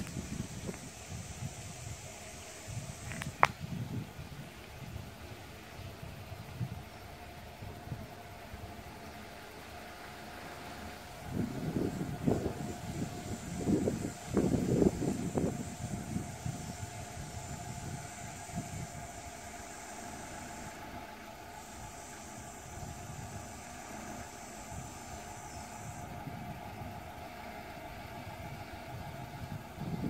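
Autostar I730 LCA motorhome's engine running at low speed as the motorhome manoeuvres slowly, its low rumble swelling for a few seconds midway as it passes close. There is one sharp click a few seconds in.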